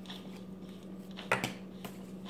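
Tarot cards being handled as a card is drawn from the deck: one short, sharp snap about halfway through and a fainter tick near the end, over a steady low hum.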